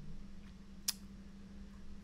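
A single short computer-mouse click a little under a second in, over a faint steady low room hum.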